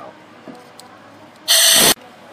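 A short blast of compressed air from a blowgun nozzle down a spark plug well, clearing out debris so nothing falls into the cylinder when the plug is pulled. The loud hiss comes near the end, starts and cuts off abruptly, and lasts about half a second.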